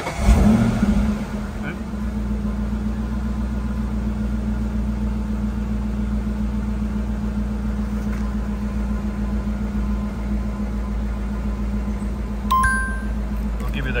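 1999 Ford Mustang engine starting by remote start, catching within the first second, then idling steadily. A short electronic two-tone beep sounds near the end.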